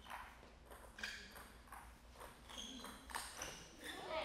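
Table tennis rally: the plastic ball clicking faintly off the rubber paddles and the table, a series of light clicks about every half second to a second.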